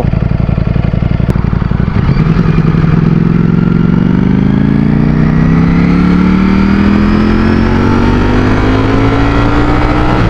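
Ducati Streetfighter V4's V4 engine running at low, steady revs, then accelerating from about two seconds in with a long, steady rise in pitch. The pitch drops at the very end as it shifts up a gear.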